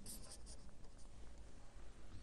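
Marker pen writing on a white writing surface, faint and scratchy.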